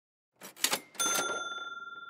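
Logo-reveal sound effect: a brief rattling burst about half a second in, then a bright ringing ding at one second that slowly fades away.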